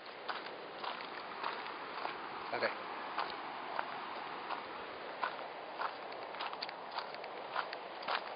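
Footsteps crunching on a gravel footpath at a walking pace, about two steps a second, over a steady rushing background noise.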